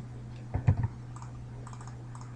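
A few quick clicks of computer keyboard keys a little after half a second in, with fainter ticks later, over a steady low electrical hum.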